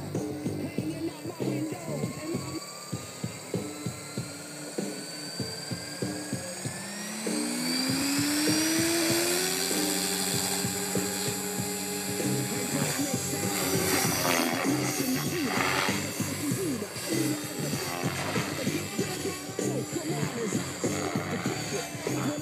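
Compass Atom 500 RC helicopter spooling up: a motor and rotor whine rises in pitch for about eight seconds, then holds steady. A song with a steady beat plays over it.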